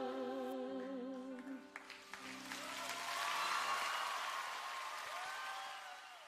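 The last held note of a congregational worship song, voices with vibrato over a sustained keyboard chord, ending about a second and a half in. Then a few seconds of congregation applause that fades away.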